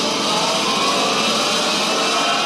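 Rocket blast-off sound effect from a 1950s radio drama: a loud, steady rushing noise of a rocket engine firing, with faint rising tones in it.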